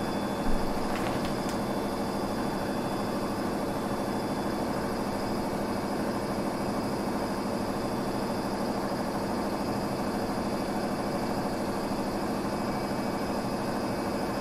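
A steady background hum with a faint hiss, unchanging throughout, with one soft bump about half a second in.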